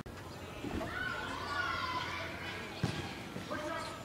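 Faint, high-pitched voices in the distance, with a single knock about three seconds in.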